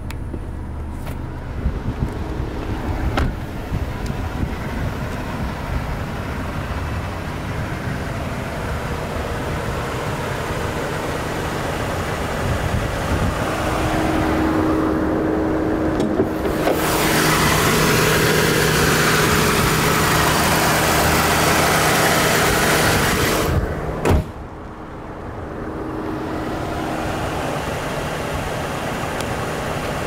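A car engine running steadily. A louder rushing stretch in the middle stops abruptly with a sharp click.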